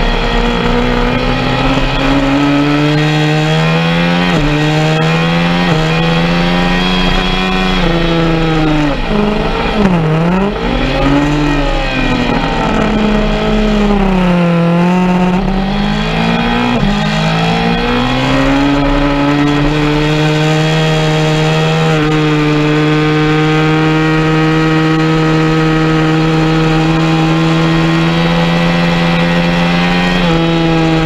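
Sport motorcycle engine heard from on board at track speed, revving up and down through the gears. The pitch steps up with upshifts early on, drops twice as the bike slows for corners, then climbs again under hard acceleration and settles into a steady high note near the end.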